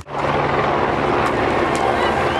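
A steady engine drone, with a haze of crowd noise beneath it, starting suddenly at an edit.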